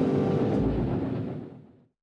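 Ore train hauled by two steam locomotives, a dense steady rumble that fades out to silence about a second and a half in.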